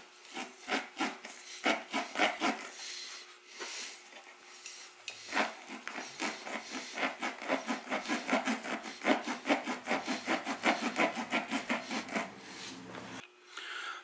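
Tire plug kit's reamer tool rasping in and out of a nail puncture in a motorcycle tire's tread, roughening and cleaning out the hole for the plug. A few slower strokes at first, then a long run of quick strokes, several a second, that stops shortly before the end.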